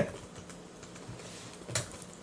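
A pause in conversation: faint scattered small clicks and taps over low room hiss, with one brief louder noise about three-quarters of the way through.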